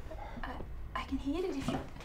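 Light clinks of dishes and cutlery, a few sharp ticks in the first second, with a short stretch of a voice in the second half.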